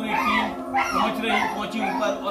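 A man talking over steady background music.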